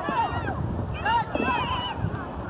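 Several voices shouting over one another in short, high calls, like spectators yelling encouragement during an attacking play in a youth soccer game, over a steady low rumble.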